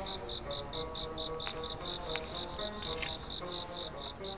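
Crickets chirping in an even rhythm, about four to five chirps a second, over soft background music.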